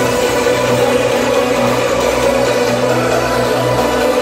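Dance music over a loud club sound system during a breakdown: sustained synth chords over a low bass drone, with no kick drum.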